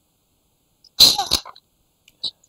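About a second of silence, then a single short, loud burst of a man's voice lasting about half a second.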